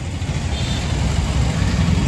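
Street traffic in a jam: motorcycle and car engines idling and running close by, a steady low rumble.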